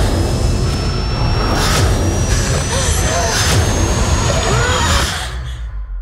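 Film-trailer sound design: a dense, loud low rumble with a thin high whine rising slowly in pitch, several short wavering cries and a few sharp hits, all cutting off about five seconds in to leave only a low rumble.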